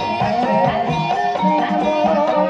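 Live dangdut-style ebeg accompaniment music: a busy melody of short notes over regular drum beats.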